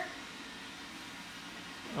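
A robot vacuum cleaner running: a steady, even whir of its motor with no changes.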